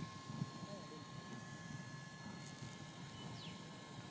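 Faint low murmur of distant voices over quiet outdoor background, with a faint steady hum of two thin tones and one short falling chirp near the end.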